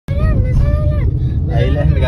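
Steady low road-and-engine rumble inside a small Maruti Suzuki Celerio hatchback's cabin while it drives. Over it, a high-pitched voice holds two drawn-out syllables in the first second, followed by chatter.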